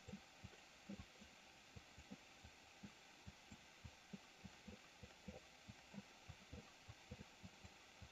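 Near silence: faint room hiss with soft, irregular low thuds, two or three a second.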